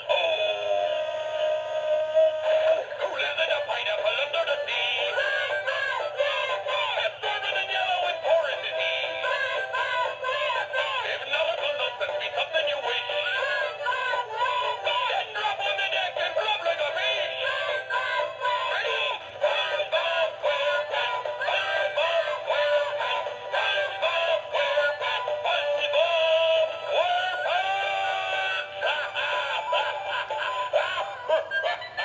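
A Gemmy animated SpongeBob SquarePants figure playing a song, with singing over music, through its small built-in speaker. The sound is thin and tinny, with no bass.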